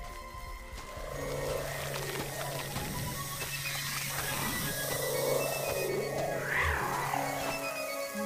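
Background music with a sustained low note, over which a cartoon creature's warbling, croaky growls come in twice, about a second in and again around five seconds in.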